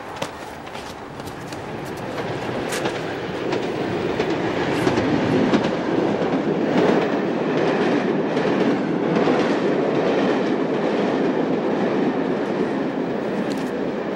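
Loud rumbling, clattering noise that builds up over the first few seconds and then holds steady, with scattered sharp clicks in it.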